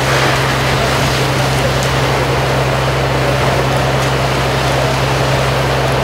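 Fire truck's engine running steadily at the scene: a constant low hum under an even hiss.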